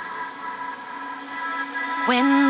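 Breakdown in a trance track: the bass has dropped out, leaving faint held synth tones over a hiss-like noise sweep that swells louder toward the end.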